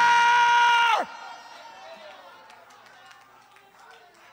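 A man's long shout into a handheld microphone, held on one high pitch and dropping off about a second in, followed by faint background voices.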